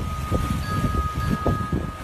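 Wind buffeting a phone microphone outdoors: a rough rushing noise with irregular low rumbles, and a thin steady high tone through most of it that stops near the end.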